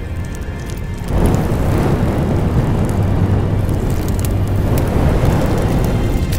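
Fire sound effect on a show's soundtrack: a dense crackling rush with a low rumble that swells up suddenly about a second in and holds, with music underneath.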